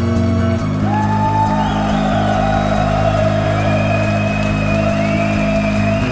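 Live atmospheric progressive metal band playing: distorted guitars and bass holding low chords over a steady drum beat, with a sustained, bending melody line entering above them about a second in.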